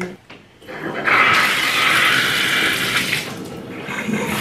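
Shower turned on: water starts running about a second in and continues steadily from the shower head, after a few small handling clicks.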